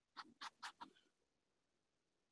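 Four short, faint scratching strokes in quick succession within the first second: paint being worked into the fabric of a soft luggage bag by hand.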